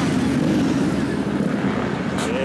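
Motorcycle engines running as bikes ride past, a steady low rumble.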